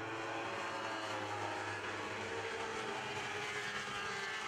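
Several Lightning Sprint race cars, each powered by a 1,000cc motorcycle engine, running at speed around a dirt oval: a steady, even engine drone.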